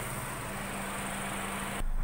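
Steady background hiss with a faint mechanical hum. Near the end it cuts off abruptly and is replaced by a lower, louder hum.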